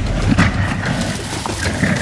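Gorilla vocalizing over a low rumble.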